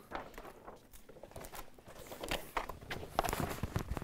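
Light footsteps on a stage floor with rustling and soft knocks of a large card pasta-box costume being handled and fitted over a man, getting busier and louder in the last second.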